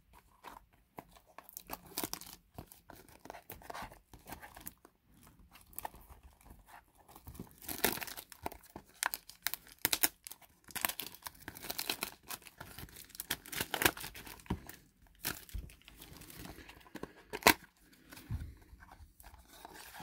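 Clear plastic shrink wrap crinkling and tearing as it is pulled off a cardboard trading-card box, in irregular crackles, with louder bursts about halfway through and again near the end.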